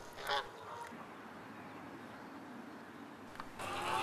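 A short waterfowl call about a quarter second in, then faint outdoor ambience over the water. A steady hum comes in near the end.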